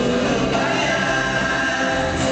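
Live rock band music with several voices singing long held notes; the drums and bass drop back for most of it.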